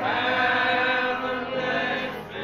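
Congregation singing a hymn together in unison, drawing out a long held note that gives way to the next phrase near the end.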